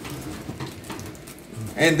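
Oven's wire rack being slid out by hand: faint metal scraping with a few light clicks.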